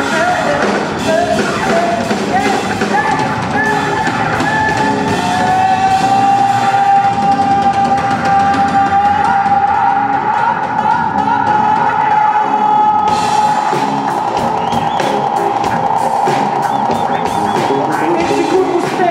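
Live rock band playing with singing, bass guitar, keyboards and drum kit. A long held note runs through the middle, the cymbals drop out for a few seconds, then come back in with the full band about two-thirds of the way in.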